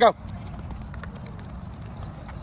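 Footsteps of a child sprinting in Crocs: a quick, irregular run of light steps.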